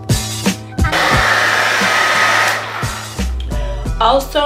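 Background music with a steady beat; about a second in, an old hand-held blow dryer with a diffuser, on its low setting, blows with a steady rush for about a second and a half, then cuts off suddenly.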